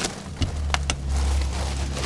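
Someone climbing into a bunk onto a plastic-wrapped mattress: plastic crinkling and a few sharp knocks against the bunk, with a steady low rumble starting about half a second in.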